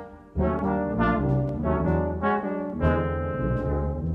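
Brass band playing a hymn-tune arrangement: tubas, euphoniums, trombones and tenor horns sounding full sustained chords that move in steps. There is a short break between phrases just after the start.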